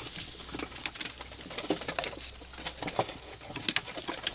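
Young rats scrabbling over a cardboard box and the board beneath it: irregular light taps and scratches of small claws.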